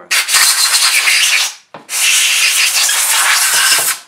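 Compressed-air blow gun blowing carb cleaner off a TH400 transmission pump half: two long blasts of air, the first about a second and a half, the second about two seconds.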